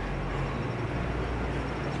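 Steady low rumble of distant city traffic, with no distinct events.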